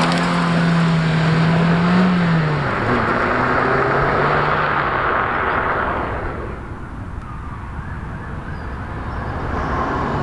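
Daihatsu Copen pulling away hard and accelerating up the road, its engine note held high and then dropping about two and a half seconds in as it shifts up. The sound fades as the car draws away, then grows louder again near the end as it comes back.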